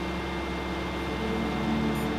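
Vermeer D23x30 S3 Navigator horizontal directional drill's 100 hp Deutz diesel engine running steadily: an even, low hum, quiet for a drill rig.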